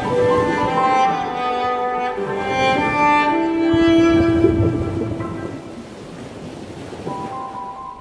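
Film score of bowed strings holding long, overlapping notes that swell to a peak about four seconds in and then die down, over a low wash of surging water.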